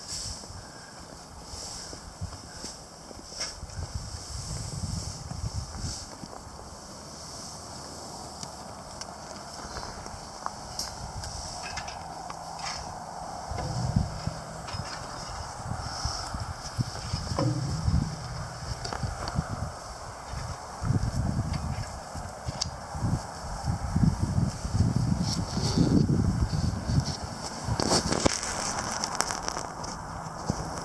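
Wind buffeting the microphone in irregular low rumbles, heavier in the second half, with scattered crunches and knocks from footsteps on frozen snow.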